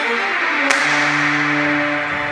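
Music sting for the logo: a swelling whoosh with one sharp hit about two-thirds of a second in, followed by a low chord that is held.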